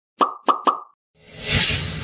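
Animated-intro sound effects: three quick cartoon pops in the first second, then a whoosh that swells to a burst about a second and a half in and slowly fades.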